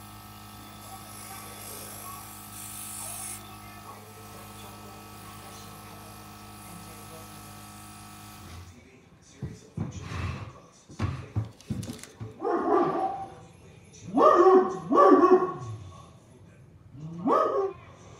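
Airbrush compressor running with a steady hum and the hiss of the spray, cutting off about eight and a half seconds in. After that a dog barks several times, loudest near two-thirds of the way through.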